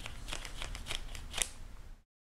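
Origami flapping bat of thin, firm kami paper springing open and flapping after release: a quick, irregular run of sharp paper clicks and rustles, the loudest about one and a half seconds in.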